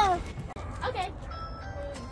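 A child's high-pitched voice calls out, then a short electronic jingle of a few clear, steady notes at different pitches begins about a second and a half in.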